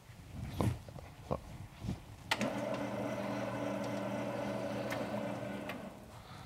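A motorised sliding blackboard panel moving up: an electric motor runs with a steady hum for about three and a half seconds, starting a little over two seconds in and stopping just before the end. A few light knocks come before it.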